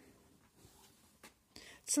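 Near silence in a pause between sentences, with a faint tap about a second in and a short intake of breath near the end.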